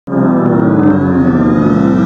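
Loud electronic logo sound: a dense chord of many tones that starts abruptly and slowly slides down in pitch.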